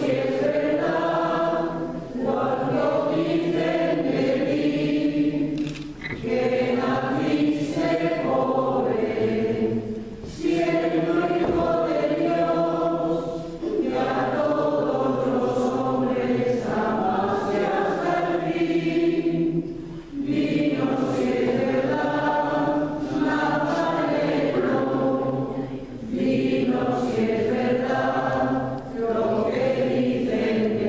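A choir singing slow, sustained phrases of several seconds each, with short pauses between them.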